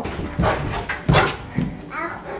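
Cane Corso dog making two short, gruff woofs, about half a second and a second in.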